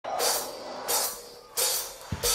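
A drum kit's cymbal struck three times, evenly about two-thirds of a second apart, each hit ringing briefly before the next. The hits come as a count-in just before a live heavy-metal band comes in.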